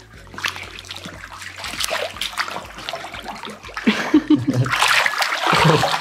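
Water splashing and sloshing as a person clambers onto an inflatable swim float in a pool, getting louder about four seconds in.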